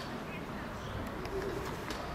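A bird calling briefly, low-pitched, about a second and a half in, over the steady murmur of people talking in the background.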